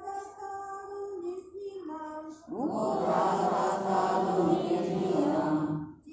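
Call-and-response chanting of a Sanskrit scripture verse. A lone voice intones a line on steady held notes, then about two and a half seconds in a group of voices repeats the line together, louder.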